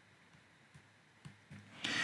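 Faint, short scratches of a stylus writing on a tablet screen, louder toward the end.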